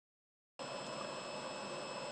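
Digital silence, then about half a second in a steady hiss and hum sets in abruptly, with faint thin high-pitched tones held steady through it: the background of a room with a running machine.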